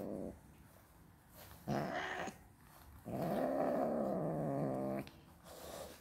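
Persian cat growling in long, low growls that rise and fall in pitch: a short one about two seconds in and a longer one of about two seconds past the middle. The growls are a sign of the cat's anger at being groomed.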